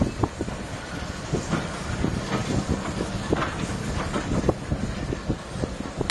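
Steam locomotive working out of sight, with irregular clanks and knocks over a steady low hum and rumble.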